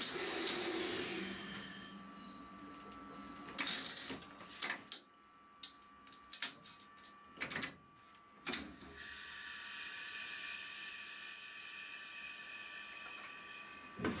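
Cab brake controls of a class 151 electric locomotive being worked by hand: a hiss of compressed air for about two seconds, then a series of clicks and knocks as the levers are moved through their notches, then a steady hiss of air venting through the last five seconds.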